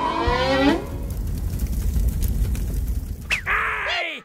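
Cartoon sound effect of a fire burning: a steady rumbling, crackling noise. It comes after a short rising sliding sound in the first second and ends with a quick falling whistle-like glide.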